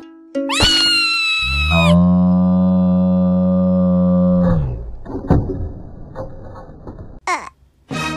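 Cartoon sound effects. A high squeal starts about half a second in and bends up and down for over a second. It gives way to a long, low, steady tone that lasts about two and a half seconds. Then come a few light knocks and a quick swooping whistle near the end.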